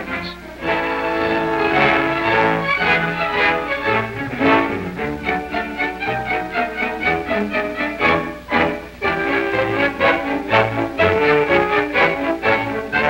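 Orchestral film score led by strings, playing held, flowing melodic notes.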